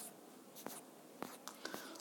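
Faint room tone with a few soft, short clicks spread across the two seconds.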